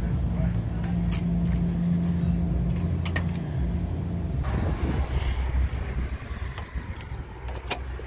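A steady low machine hum with a few sharp clicks and knocks. Its highest tone stops about halfway through, and it grows fainter toward the end.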